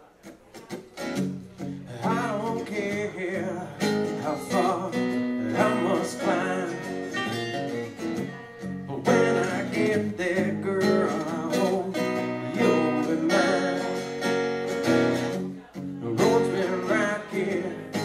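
Two acoustic guitars playing a song's instrumental intro, strummed chords with picked melody notes over them, starting softly and filling out about two seconds in.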